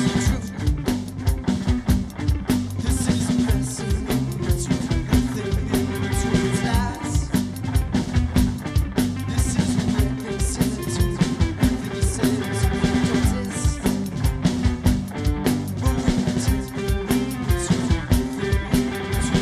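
Live punk-pop rock band playing a song: drum kit keeping a steady beat under electric guitars, bass guitar and keyboard.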